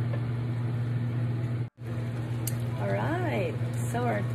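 Steady low electrical hum of a Campmaster portable induction cooktop running under a pan of simmering curry. The hum cuts out for an instant just under halfway, and a short wavering voice is heard about three seconds in.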